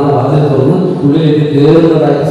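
A man's voice chanting a verse in a sustained, sing-song recitation, with long held notes running on without a break.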